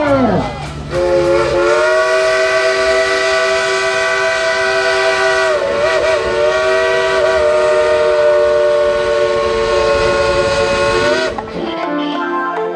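Steam locomotive's chime whistle blowing one long blast of about ten seconds. It starts about a second in, sounds as a chord of several steady tones, wavers briefly around the middle, and cuts off shortly before the end.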